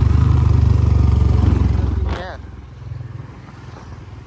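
Royal Enfield Bullet 350's single-cylinder engine through an aftermarket 'Mini Punjab' silencer, held on the throttle with a loud, rapid exhaust beat. The throttle is let off about two seconds in, and the exhaust drops to a much quieter, lower beat.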